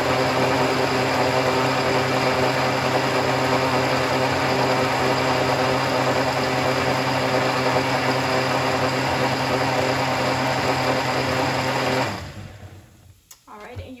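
Countertop blender running steadily at high speed, liquefying tomatoes, garlic and chipotle chilies in water into a sauce. It is switched off about two seconds before the end, and the motor winds down quickly.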